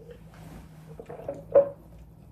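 Small wet mouth and liquid sounds of a person sipping a drink, with a short murmured voice sound about one and a half seconds in.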